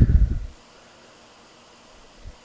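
A short, loud low thump lasting about half a second, then a faint steady hiss of background noise.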